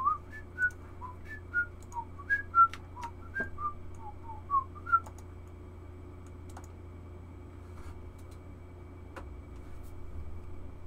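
A man whistling a short, idle tune of quick notes that hop up and down in pitch for about five seconds, then stopping. A few sharp clicks fall among and after the notes.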